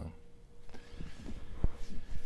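Cardboard LP gatefold jacket being handled and folded, a rustling, sliding sound with a few soft taps and one sharper knock about a second and a half in.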